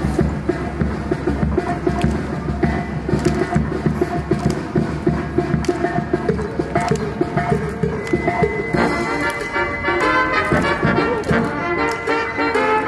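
Brass band playing a lively tune live, with trombone among the horns over a steady beat. Fuller, sustained brass chords come in about nine seconds in.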